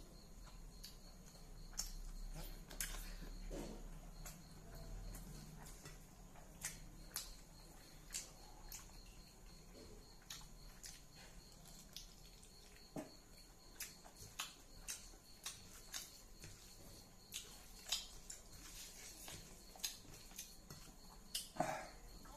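Faint, wet mouth clicks and smacks of a man chewing mouthfuls of rice and smoked pork eaten by hand, coming irregularly about once or twice a second.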